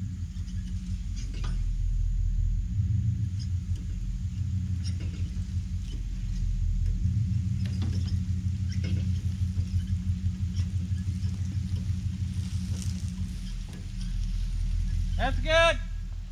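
Truck engine running at low revs with a steady, pulsing low rumble during a slow tow of one vehicle by another. A short voice comes in near the end.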